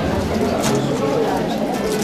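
Indistinct chatter of many people talking at once in a crowded room, a steady murmur with no single voice standing out.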